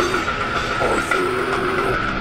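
Death metal band playing: a dense, steady wall of heavily distorted guitars over drums, with held notes.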